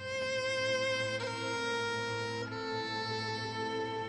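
Background score: a violin playing slow, sustained notes, changing note about a second in and again past halfway.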